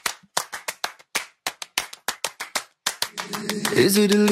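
Rapid rhythmic hand claps, about six a second, opening an a cappella pop song. About three seconds in, sung vocal harmony chords enter over them.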